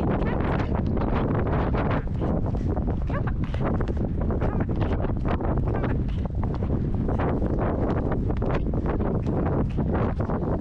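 Wind buffeting a GoPro's microphone: a steady low rumble broken by frequent irregular crackly gusts.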